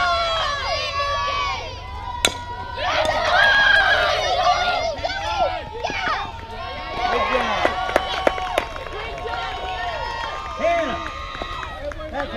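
A single sharp crack of a bat hitting a fastpitch softball about two seconds in, followed by spectators and players shouting and cheering, with a few lighter clicks later on.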